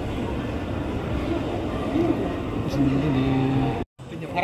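Busy shopping-mall ambience while riding an escalator: a steady din of background voices and machinery, with a low steady hum near the end.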